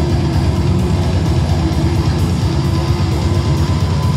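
Death metal band playing live: heavily distorted electric guitars, bass and drums, loud and without a break.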